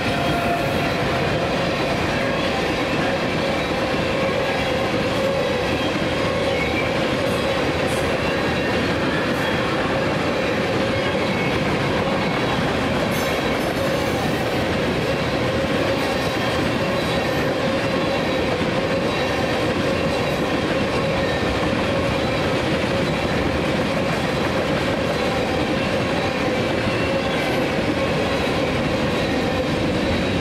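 A long freight train of tank cars, covered hoppers and boxcars rolling past at a steady speed: continuous wheel-on-rail noise with a steady tone running through it.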